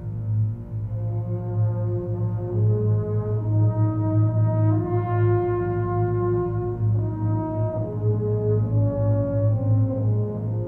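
Orchestral film score from a 1968 Italian western: slow, sustained brass notes, horn-like, over a steady low drone. The held melody line climbs to its highest point about halfway through, then steps back down.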